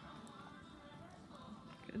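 Faint outdoor background: a low, even rumble with faint distant talk, and a voice starting up right at the end.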